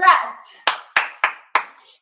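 Four quick hand claps, about three a second.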